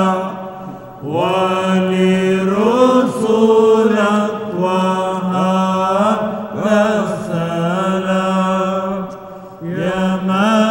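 Byzantine liturgical chant: a steady held drone (ison) under an ornamented, melismatic melody line. The singing breaks off briefly about a second in and again near the end, then resumes.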